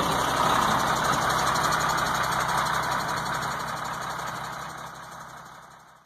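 Truck's diesel engine idling steadily, fading out over the last couple of seconds.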